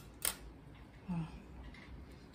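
A single sharp click as a paintbrush is handled among the paint pots on the table.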